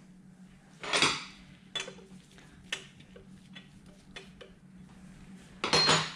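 A few light clicks and taps, roughly a second apart, from gloved hands handling the top of a Ducati 1198 engine's timing-belt and cam-pulley area. There is a short rustle about a second in, and a steady low hum lies behind.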